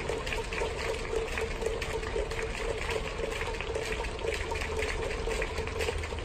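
Steady crowd and hall noise inside a domed ballpark: a continuous murmur and rustle of the sparse crowd over a constant low hum.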